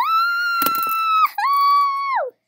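A child's high-pitched excited squeals: two long held notes, each dropping in pitch as it ends. A sharp tap comes about a third of the way through.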